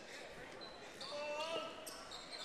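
Quiet gymnasium ambience with a basketball dribbled on the hardwood court. A short, faint, high-pitched sound comes a little after a second in.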